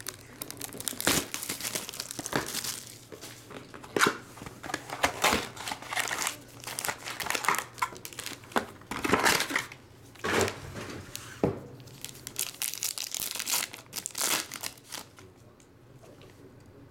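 Panini Chronicles football card box and its foil-wrapped packs being torn open by hand: irregular crinkling and tearing of wrapper and cardboard, with several sharp rips.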